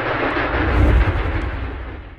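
A deep, noisy rumbling sound effect that swells to its loudest about a second in and then fades.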